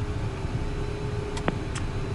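Cockpit noise of a Cessna Citation M2 with its twin turbofan engines running, holding on the runway: a steady rumble and hum with a fixed tone, not spooling up. A single sharp click comes about one and a half seconds in.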